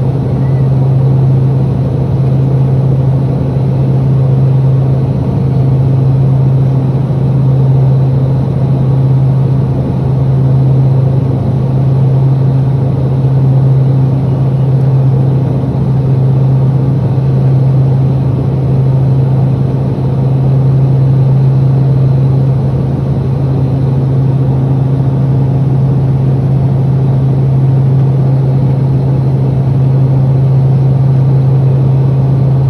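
Cabin drone of a Fairchild Swearingen Metroliner in flight: its two Garrett TPE331 turboprop engines and propellers run steadily, giving a strong low hum with fainter higher overtones over a rushing noise. The loudness swells gently every couple of seconds.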